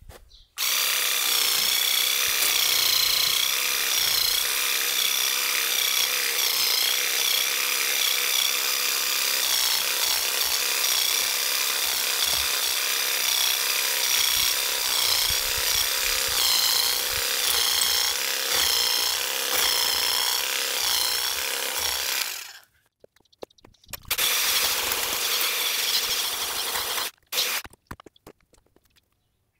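Musashi WE-700 corded electric weeding vibrator running with its vibrating tines worked into the soil to loosen weed roots, a loud buzzing whose pitch wavers as the load changes. It runs for about twenty seconds, cuts off, then runs again for about three seconds near the end.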